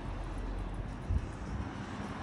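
A steady low rumble of outdoor background noise, with a slight swell about a second in.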